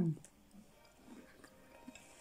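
A woman's "mmm" of appreciation trailing off at the start, then faint chewing with small mouth clicks as she eats a bite of food.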